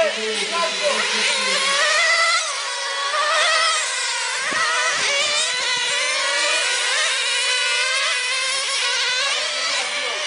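Several 1/10-scale radio-controlled racing cars lapping a track, their small high-pitched motors overlapping and rising and falling in pitch as they accelerate and brake.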